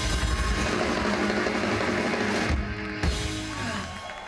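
Rock band playing live on stage: drum kit with bass and guitar, loud and full. The music drops away about three seconds in.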